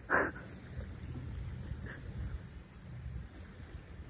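Wind buffeting the microphone as a steady low rumble, after a short breathy laugh at the very start. Over it, a faint insect chirps in an even high pulse about three times a second.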